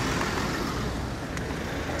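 A car moving slowly past close by, giving a steady rumble of engine and tyre noise.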